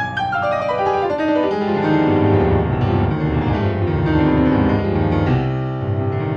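Ravenscroft 275 virtual grand piano played from a keyboard: a quick run of notes falling in pitch in the first second, then full held chords over a deep bass.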